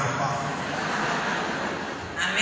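A crowd applauding steadily, with no voice over it.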